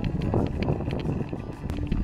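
Wind buffeting the microphone of a handlebar-mounted camera as a mountain bike rolls over a gravel road, with scattered clicks and rattles from the tyres and bike.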